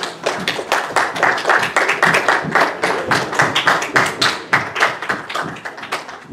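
A congregation clapping: quick, dense hand claps from many people, easing off a little near the end.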